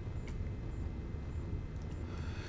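Steady low background hum of room tone, with a couple of faint clicks.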